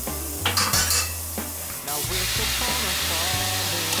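Wooden chopsticks stirring noodles in a stainless steel pot of boiling water, with a few clinks against the pot in the first second. About halfway through, a steady rush of water poured into the pot from a glass jug. Background music with a low bass line runs underneath.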